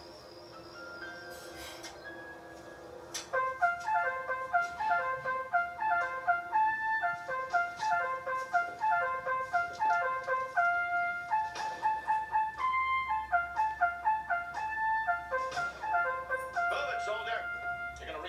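Television background score: a few seconds of soft held tones, then a quick, bouncy melody of short staccato notes on woodwind or brass-like instruments that runs on to the end.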